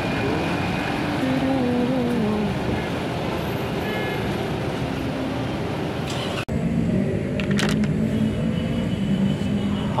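A light truck's engine running as it pulls away, with road traffic noise around it. The sound cuts out for an instant about six and a half seconds in.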